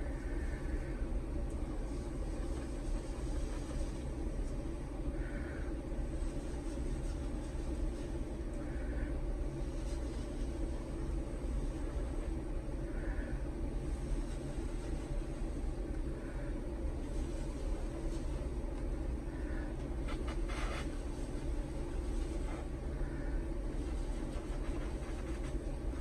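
Steady low background rumble, with faint short puffs of breath blown through a thin plastic tube every three or four seconds, pushing wet acrylic paint across glass.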